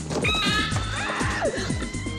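A shrill, high scream from a horror film scene, in two cries, over background music with a steady thumping beat.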